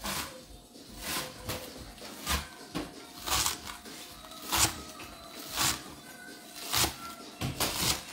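About ten sharp kitchen knocks at an uneven pace, roughly one a second, over faint background music.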